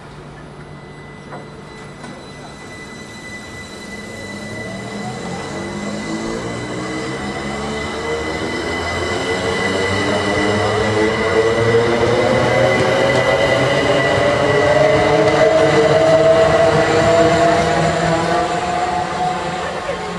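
Thameslink Class 387 electric multiple unit pulling away and accelerating: its traction motors give a whine of several tones that climbs steadily in pitch. Wheel and rail noise builds under it, loudest a few seconds before the end and easing off as the last carriages pass.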